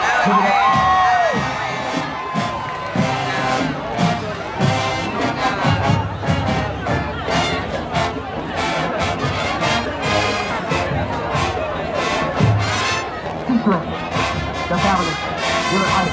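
High school marching band playing on the field, brass with a steady drum beat, while the crowd of spectators cheers and shouts over it.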